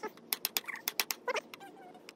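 A metal blade tapping and chipping at a green bamboo culm: a quick, uneven run of sharp clicks, several a second, mixed with brief squeaky sounds.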